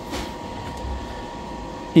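Cooling fan of a Lewanda B200 battery load tester running steadily during its cooling phase after a high-current load test.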